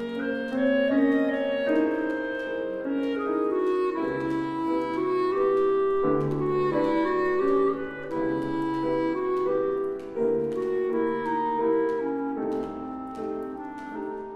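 Clarinet playing a legato melody of held notes, accompanied by a grand piano.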